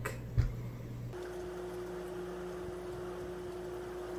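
A soft low thump, then from about a second in a steady hum with a faint held tone.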